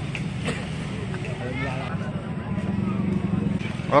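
Street traffic: a motor vehicle engine running close by, growing steadily louder, with faint crowd voices over it.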